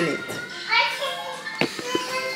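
Children's voices talking and playing, with a short knock about one and a half seconds in.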